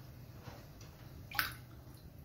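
Bath water moving faintly in a tub, with one short water plink about one and a half seconds in.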